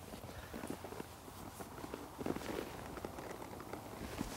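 Faint, irregular steps and shuffling of a horse's hooves in arena sand, with scattered small knocks.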